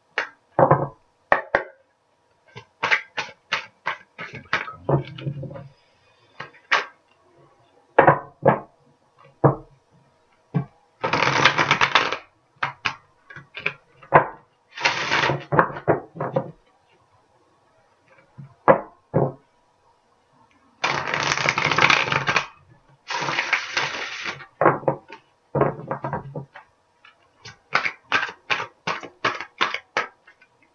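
A deck of oracle cards being shuffled by hand: runs of quick card clicks and slaps, with four bursts of about a second of dense riffling and a fast flurry of ticks near the end.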